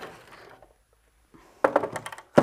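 Card stock rustling briefly, then a plastic paper trimmer set down on a cutting mat, making a quick clatter of clicks and knocks near the end.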